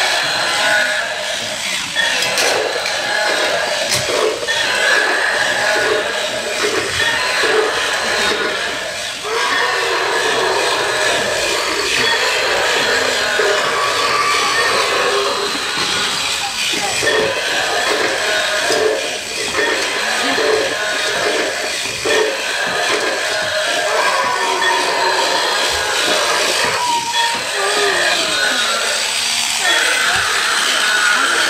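Battery-powered electronic dinosaur toy with light-up eyes and mouth playing its recorded roars and sound effects without a break, through a small built-in speaker.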